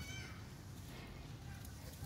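A short, high-pitched animal call right at the start, over a steady low background rumble.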